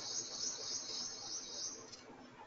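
A steady, high-pitched trill that stops shortly before the end.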